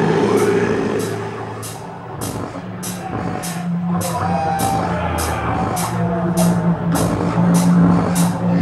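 Heavy metal band playing live: a held, droning low guitar and bass chord under evenly spaced cymbal hits, about two a second. The sound dips about two seconds in and builds back up toward the end.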